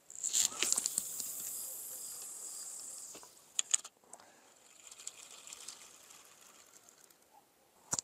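Overhead cast with a carp rod: a sudden swish, then line hissing off the reel spool for about three seconds, fading as the lead carries out. A couple of sharp clicks follow a little past halfway.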